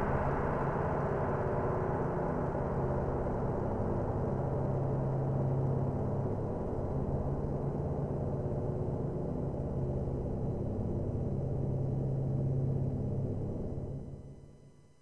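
The closing tail of an electronic music track: a sustained synthesizer drone with a steady low tone under a wash of higher sound, slowly thinning and fading out near the end.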